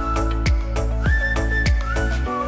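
Background music with a steady kick-drum beat, about one beat every half second or so, under a whistle-like lead melody that slides up into long held notes.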